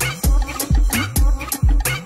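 Electronic club track playing from a DJ set, with a heavy kick drum about twice a second and sharp, crisp percussion hits between the kicks; a sampled bird-like sound rides over the beat.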